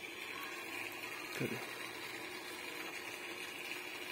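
Quiet, steady background noise with a faint high-pitched hum throughout, broken once by a single short spoken word about a second and a half in.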